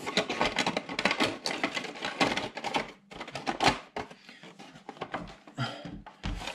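Quick run of clicks, taps and light knocks as a plastic RC buggy body shell is pressed onto its chassis and the 1/10 buggy is handled and set down on the bench. The clatter is dense for about the first three seconds, then thins to scattered taps.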